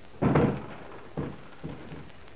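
An office door shutting with a thud about a quarter-second in, followed by two softer thuds.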